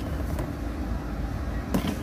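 Steady low rumble of indoor room tone, with a soft knock near the end as a plastic lunch box is handled.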